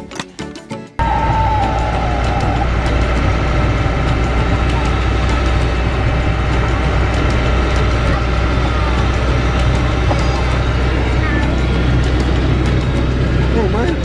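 Steady road and engine noise with a strong low rumble inside the cabin of a moving Fiat Ducato camper van. It starts abruptly about a second in.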